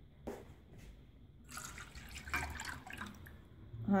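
Milk pouring from a plastic sachet into a stainless steel saucepan: a splashing pour that starts about one and a half seconds in and runs for about two seconds, after a brief click near the start.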